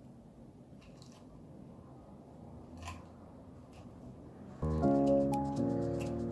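Faint crinkling of gold mesh wired ribbon being handled and gathered into a bow, a few soft crackles over quiet room sound. About four and a half seconds in, background music with held chords starts suddenly and is much louder than the ribbon.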